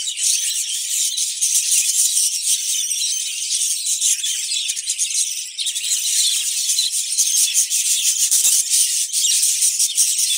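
Budgerigars chattering: a dense, continuous high-pitched chirping and warbling with no low sounds under it.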